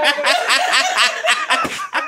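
People laughing together, a quick run of short laughs.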